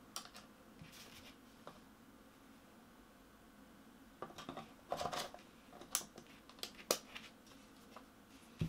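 Small plastic clicks and rattles of a Canon EOS R6 mirrorless camera body being handled as its battery is put in. After a quiet start with a couple of soft clicks, a cluster of clicks comes about halfway through, ending in one sharp snap.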